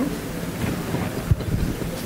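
Steady low rumble of room noise in a hall full of seated people, with a single short thump a little past the middle.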